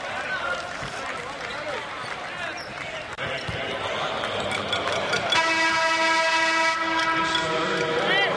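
Basketball arena horn sounding one long, steady blast of about two and a half seconds, starting past the middle, over the murmur of the crowd in the hall.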